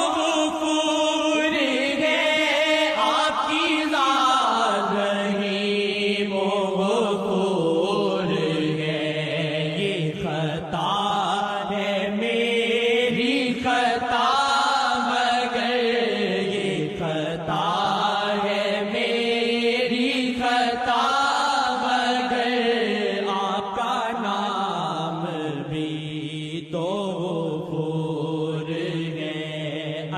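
A voice singing a slow devotional Urdu naat as a chant, with long held notes that slide up and down in pitch and no beat.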